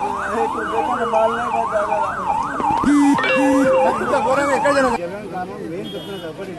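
Emergency vehicle's electronic siren wailing in a fast up-and-down yelp, about two sweeps a second, cutting off suddenly about five seconds in. Two short low horn honks sound about three seconds in.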